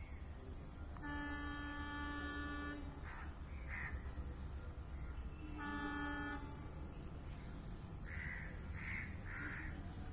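Indian Railways locomotive horn on an approaching express running through the station: a long steady blast of about two seconds, then a short one a few seconds later.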